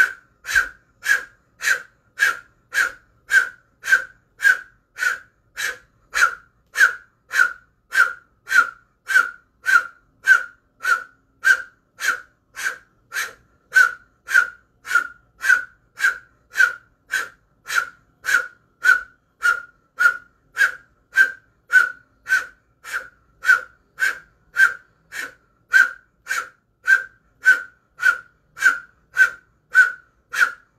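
Powerful breath of fire through an O-shaped mouth: sharp, rhythmic exhales with a breathy whistle on each, just under two a second and very even, each timed to a stroke of the fist.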